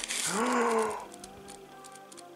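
A short wordless vocal sound, an "ooh" that rises then falls in pitch, in the first second, with tissue paper rustling briefly at the start. Faint steady background music runs under it.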